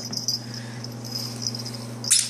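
A puppy's breathing, heard as short irregular hissy bursts, over a steady low hum.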